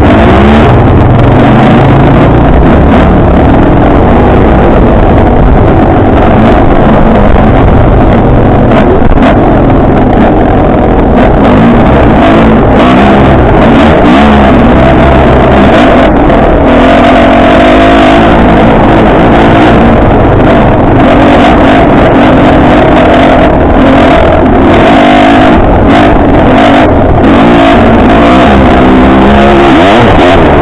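Enduro dirt bike engine running under the rider, very loud and distorted on the on-board camera, the engine note rising and falling as the throttle is worked.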